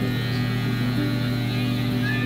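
Electric hair clippers running with a steady low hum.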